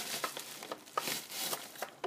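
Paper packing material crinkling and rustling as it is handled and pulled away by hand, with scattered small crackles.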